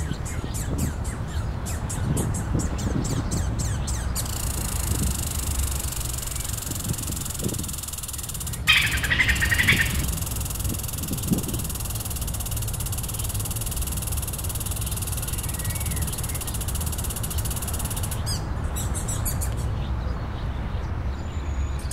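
Outdoor nature ambience with birds: a steady low rumble and hiss, with scattered short bird chirps. About nine seconds in comes a loud burst of rapid chirping lasting about a second.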